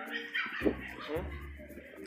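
A dog giving two short, high yips, about half a second and a second in.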